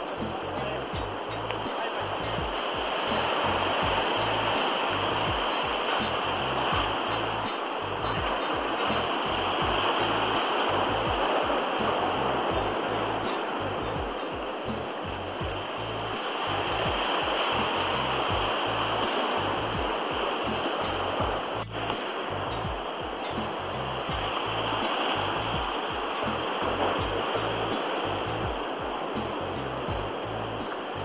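Ocean surf washing against rocks, a steady rushing noise that swells and fades every six or seven seconds as each wave of the set comes through.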